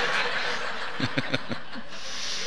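Laughter from a church congregation after a joke, with a man's short chuckle of about four quick 'heh' sounds a little past the middle.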